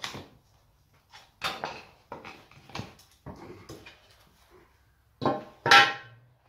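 Metal tongs and a steel bar scraping and knocking through foundry sand as a freshly poured cast iron casting is broken out of its mould, in a string of short scrapes and knocks. Two louder clanks come near the end.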